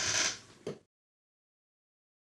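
A brief rustle of handling noise, then a single click, and then dead silence.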